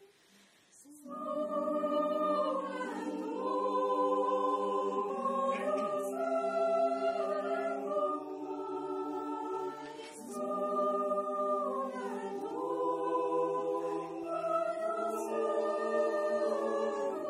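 Mixed choir of men's and women's voices singing a cappella in several parts. The choir comes in after a brief pause about a second in, then sings on with held chords that shift in pitch.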